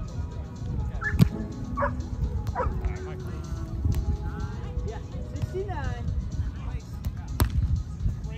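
A beach volleyball struck twice with sharp slaps, about a second in and again near the end, over wind buffeting the microphone.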